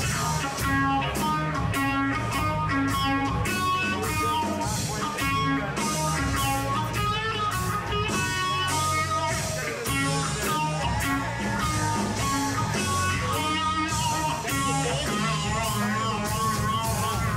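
Electric guitar played live through a stage amplifier: a fast run of picked lead notes over a steady beat.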